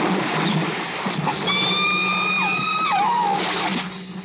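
Film soundtrack: heavy churning, splashing water, with an orca's high whistling cry that holds one pitch for over a second, then bends down and wavers before breaking off, over a musical score.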